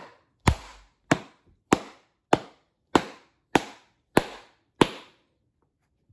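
Wooden glove mallet pounding the pocket of a water-soaked leather Rawlings Pro Preferred baseball glove to shape it: eight steady blows about 0.6 s apart, stopping about a second before the end.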